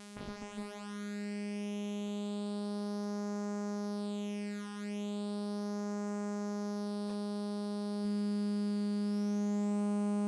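Steady sawtooth synth tone run through a 12-stage JFET phaser (Barton Musical Circuits BMC105), heard at its blended output. The phase notches sweep slowly down through the tone to a low point about halfway through and then back up. The level steps up slightly near the end.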